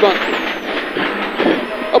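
Rally car's engine and road noise inside the cabin at speed, a steady, thin-sounding din.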